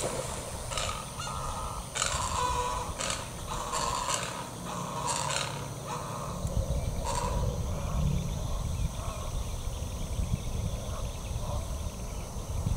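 Harsh calls of birds at a nesting colony of anhingas and great egrets, about ten short calls over the first seven seconds, then they stop.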